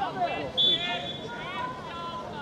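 Several voices shouting and calling out across a football pitch, overlapping one another, the loudest a short high-pitched cry a little over half a second in.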